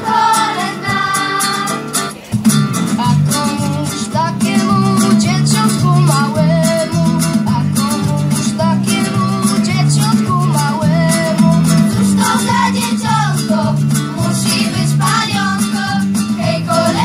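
A children's choir singing with guitar accompaniment through a PA. A low pulsing bass line comes in just after a brief dip about two seconds in.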